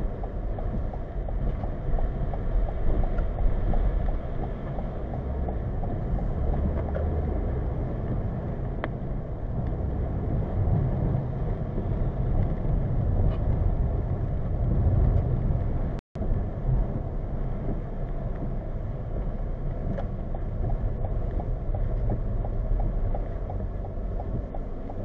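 In-cabin road noise of a 2020 Toyota Corolla driving on wet, slushy pavement, heard through a dashcam's built-in microphone: a steady low rumble of tyres and engine with a watery hiss from the wet road. The sound cuts out completely for a moment about two-thirds of the way through.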